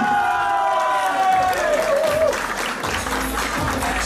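Music playing with a held sung note that slides down, over applause from the crowd as the winner's arm is raised; a low bass beat comes in about three seconds in.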